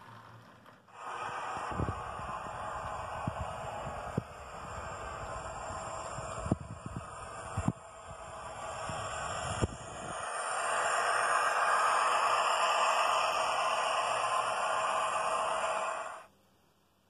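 Model railway locomotive running along the track: a steady running noise from motor and wheels on the rails, with a handful of sharp clicks in the first half, growing louder about ten seconds in.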